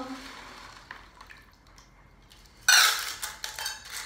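A handful of small rocks dropped into a metal muffin tin, clattering sharply about two and a half seconds in and rattling as they settle over about a second, after a few faint clicks.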